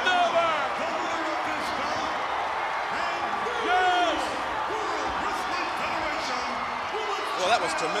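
Arena crowd cheering and shouting. Single voices whoop above the steady noise of the crowd near the start, about four seconds in and again near the end.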